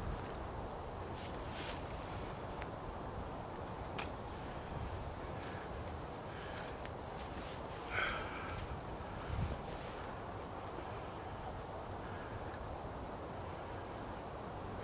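Steady outdoor wind noise with faint cloth rustling as a shirt is pulled on and buttoned, and one short louder sound about eight seconds in.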